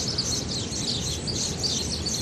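Small birds chirping, many short high chirps overlapping continuously, over a steady low background rumble.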